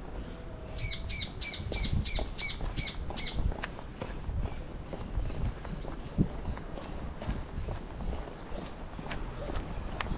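A bird calls a quick run of about eight repeated notes, roughly three a second, from about a second in until about three seconds in. Footsteps on the paved walkway sound throughout.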